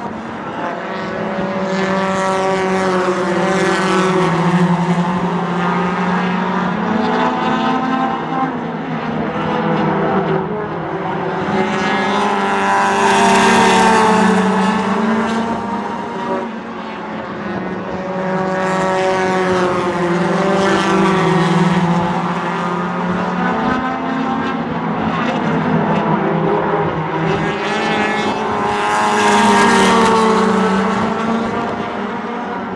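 Race car engines running hard on a short oval track. The note swells and fades roughly every eight to nine seconds as the cars come round past the stands, and the pitch rises and falls as they lift for the turns and accelerate out of them.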